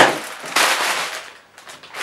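Mylar thermally insulated bag crinkling loudly as it is swung up and handled, the crackle fading away over about a second and a half.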